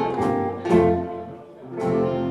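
Country band's acoustic guitars and upright bass playing the closing chords of a song: chords struck at the start, again about a second in and again near the end, each left to ring out.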